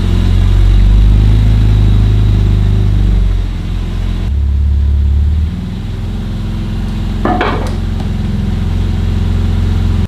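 BMW G87 M2's twin-turbo 3.0-litre inline-six running at low revs as the car is driven slowly into the garage and up onto drive-on ramps, loudest in the first few seconds. A brief higher-pitched sound rises about seven seconds in.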